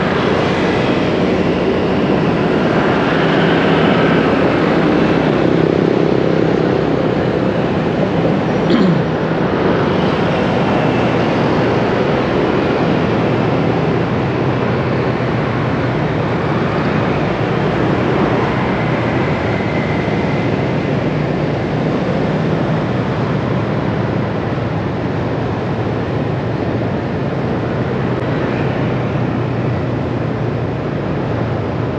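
Steady road and wind noise from riding through dense city traffic, mostly motorbikes, with a brief louder sound about nine seconds in.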